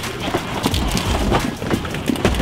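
Hollow plastic ball-pit balls clattering against each other and a cardboard box as a boxful of them is lifted and shoved into a car: a dense, irregular rattle of small knocks.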